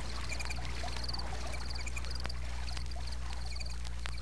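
Night chorus of chirping insects and frogs: short high chirps repeat a little more than once a second over a steady low hum, with a few faint clicks.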